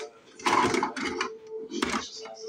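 Hard plastic RC car body being handled and lifted off its chassis: a few short rustles and clicks, over a steady faint hum.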